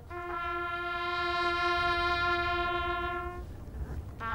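Several bugles sounding together on one long held note for about three seconds, fading out near the end.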